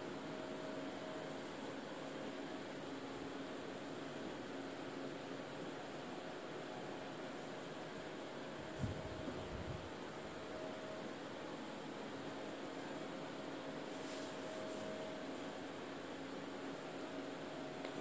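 Quiet room tone: a steady hiss with a faint, even hum, with one soft bump about nine seconds in.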